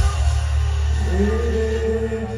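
Live rock band through a large PA: the dense full-band playing stops at once, leaving a low bass note sustaining, and about a second later a held higher note slides up and rings on.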